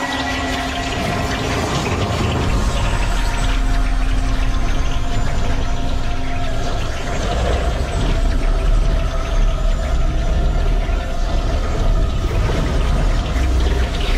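Film sound design: held music notes over a loud, continuous rushing roar, with a deep rumble coming in a few seconds in. This is the sound effect of a swirling dark vortex.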